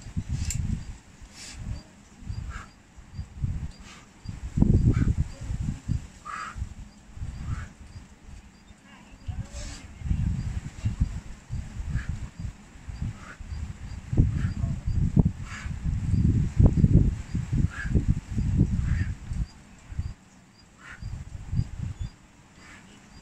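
Gusts of wind buffeting the microphone in irregular low rumbles that swell and fade, loudest about five seconds in and again in the second half, with short faint higher-pitched sounds every second or two.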